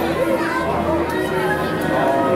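Children's and shoppers' voices over background music with sustained notes.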